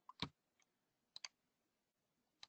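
Near silence broken by a few faint computer mouse clicks: one about a fifth of a second in, then a quick pair just after a second.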